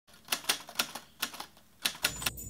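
Typing sound effect: about seven quick keystroke clicks in an uneven rhythm, with short pauses between them.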